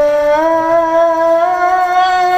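A boy's voice amplified through a microphone and PA, holding one long, steady melodic note of Quran recitation (tilawah), its pitch stepping up slightly about half a second in.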